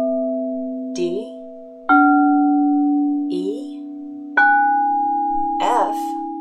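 Quartz crystal singing bowls tuned to A = 432 Hz, struck one after another up a C major scale. The C bowl rings on, the D bowl is struck about two seconds in and the E bowl at about four and a half seconds, each with a sharp onset and then a long, steady, slowly fading tone that overlaps the ones still ringing.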